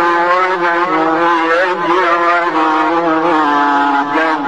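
A man reciting the Quran in drawn-out melodic tajweed style, holding one long vowel whose pitch drifts slowly down, with a brief wavering ornament about halfway through.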